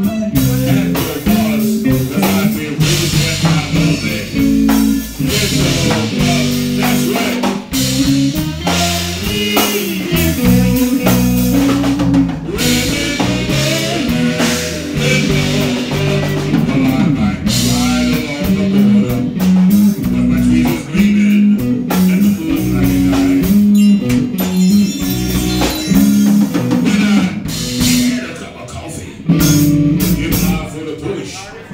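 A live rock band playing an instrumental passage: electric guitars, electric bass and drum kit going steadily, with no singing.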